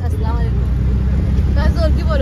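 Auto-rickshaw engine running in a steady low drone as the rickshaw drives, heard from inside its open cabin, with a woman's voice over it.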